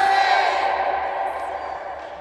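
A loud group shout from several voices, echoing in a large sports hall and fading away.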